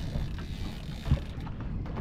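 Low steady rumble of a fishing boat on the water, with one short dull thump just after a second in.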